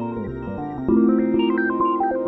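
Music played live on a Teenage Engineering OP-Z synthesizer and sampler: a held chord under a stepping melody, with a new, louder chord coming in about a second in.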